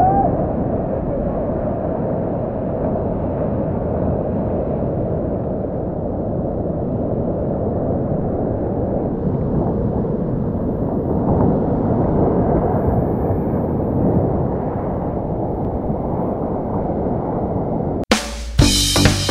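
Sea water sloshing and washing around a camera held at the water's surface, heard as a steady, muffled rush.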